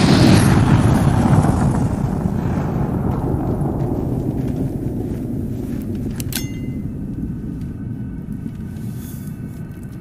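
A loud rushing whoosh and rumble, swept in by a rising hiss, that slowly fades away over several seconds. There is a short bright sound about six seconds in, as the glowing crystal sword is held up.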